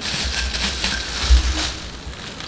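Thin plastic shopping bag rustling and crinkling as it is pulled up and handled, with low bumps from the handling.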